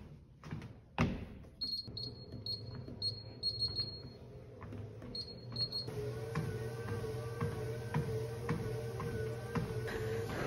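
Footsteps on a treadmill belt at a walking pace, light thuds about two a second, with short high beeps in quick clusters in the first half. From about six seconds in, background music with a steady held tone comes in over the steps.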